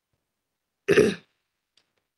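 A woman clearing her throat once, briefly, about a second in.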